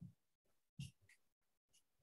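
Near silence on a video call, broken by two faint, brief noises about a second apart.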